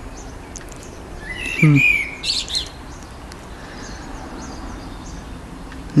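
Small birds chirping, with a louder phrase of quick gliding high notes from about one and a half to two and a half seconds in, and scattered faint chirps the rest of the time.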